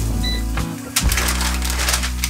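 Raw turkey sausage patty laid into a hot skillet greased with avocado oil over medium-high heat; about a second in, it starts sizzling and crackling, over steady background music.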